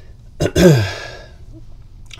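A man's single short wordless vocal sound about half a second in, its pitch rising then falling, with a breathy tail.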